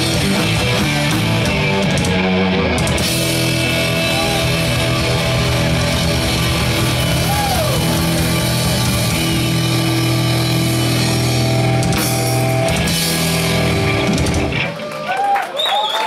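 Live heavy rock band playing loudly: distorted electric guitars, electric bass and a drum kit. The song stops abruptly about a second and a half before the end.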